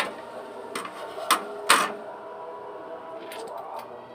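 Metal kitchen tongs and scissors clicking and snipping while handling and cutting grilled pork belly: four sharp clicks in the first two seconds, the loudest a short snip near the two-second mark, then a few fainter ticks.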